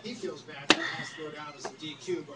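A single sharp click about two-thirds of a second in, from a ring binder and its paper being handled.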